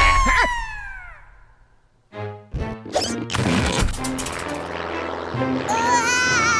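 Cartoon sound effect: a loud hit with a long falling whistle-like tone that fades away over about a second and a half. After a short gap, cartoon background music with a steady beat plays.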